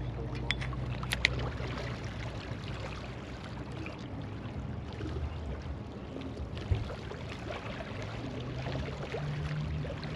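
Steady low hum and wash of open water at the shoreline, with two sharp clicks about a second in from handling the spinning reel and rod, and a single knock a little later.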